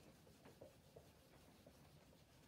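Faint rubbing of a hand wiping marker off a whiteboard, in a few short strokes.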